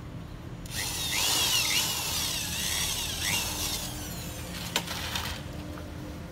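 Cordless drill driving a screw through the banner into the steel frame, running for about four and a half seconds with its pitch wavering up and down as it bites, then stopping. A sharp click comes near the end.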